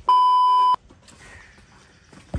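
Electronic bleep tone: one steady, high beep lasting under a second that cuts off abruptly.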